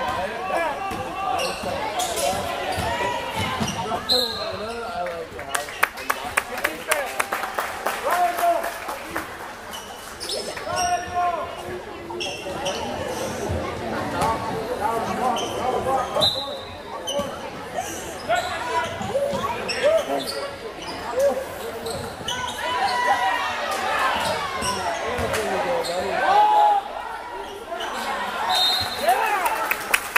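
A basketball bouncing on a gym's hardwood court amid players' and spectators' voices and shouts, in a large echoing gymnasium. Short high whistle blasts, typical of a referee's whistle, sound about four seconds in, around the middle and near the end.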